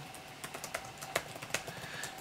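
Typing on a computer keyboard: a quick, irregular run of key clicks as a search is entered.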